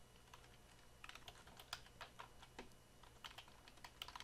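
Faint typing on a computer keyboard: irregular key clicks starting about a second in, as an email address is typed.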